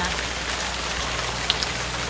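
Pouring rain: a steady patter of drops hitting the ground and nearby surfaces, with the odd louder drop.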